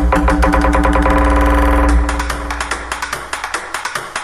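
Electronic club dance music played loud over a club sound system: a fast run of rapid beats building up over a deep bass, with the bass dropping away in the second half.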